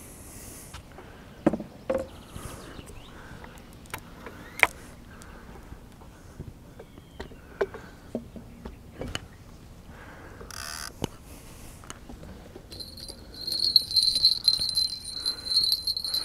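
Scattered clicks and knocks of tackle being handled, then, from about three-quarters of the way in, the small bite-alarm bell on a catfish rod jingling continuously as it is fitted and the rod moves.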